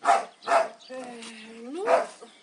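Two short dog barks close together, then a man's long hesitant "nu-u" held on one pitch and rising at the end.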